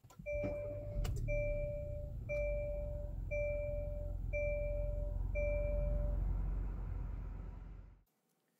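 A 2019 Hyundai Elantra GT N Line's 1.6-litre turbocharged four-cylinder is push-button started and runs at a steady idle, heard from inside the cabin, after a couple of clicks at the start. Over it a two-tone dashboard warning chime sounds six times, about once a second, then stops.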